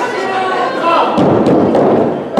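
Dull thumps and bangs on a wrestling ring, starting about a second in, over crowd voices.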